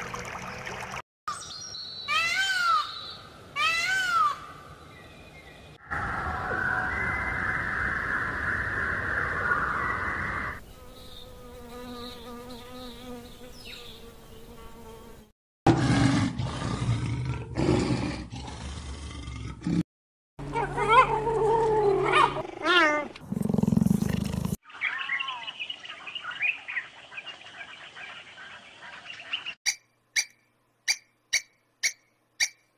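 A string of different animal sounds, each cut off abruptly for the next. Repeated chirping calls come near the start, then a steady buzz, then a lion roaring in a series of loud grunts about halfway through, followed by more pitched calls and a few sharp clicks at the end.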